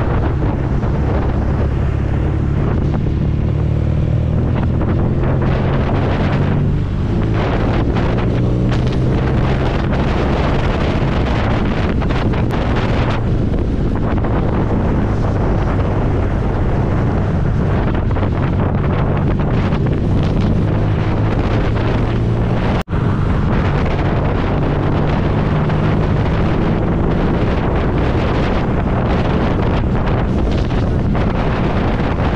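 Motorcycle engine running at highway cruising speed, heavy wind noise buffeting the microphone over it. The engine note shifts about a quarter of the way in, and the sound cuts out for an instant about two-thirds of the way through.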